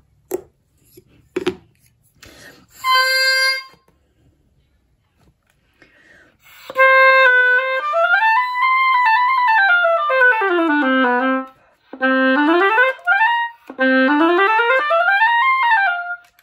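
Two sharp clicks, a knife clipping the tip of an oboe reed on the cutting block, then the oboe played on the freshly adjusted reed to test it. It plays one short held note, then quick scale runs up about an octave and down to the bottom of the range, then two more rising runs.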